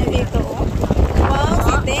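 Wind buffeting the microphone in a steady low rumble, with a high-pitched voice calling out briefly in the second half.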